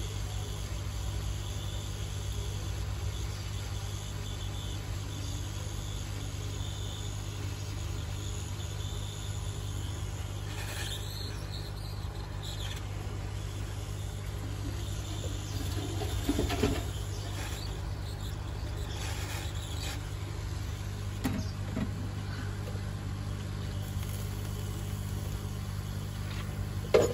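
Hot air rework gun blowing steadily while heating ICs onto a circuit board: a continuous whir of its fan and rushing air over a low hum. A few faint taps come around the middle and again later.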